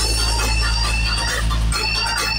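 DJ sound system's speaker stacks playing electronic music at high volume: a heavy, steady bass under a high repeating melody line.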